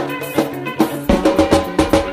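Live axé/forró band playing an instrumental passage between sung lines, drums and percussion keeping a steady beat under held chords.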